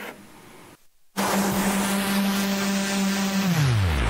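After about a second of near quiet, a sudden loud rushing sound effect opens the segment. It carries a steady low hum that slides down in pitch near the end, like an engine spooling down.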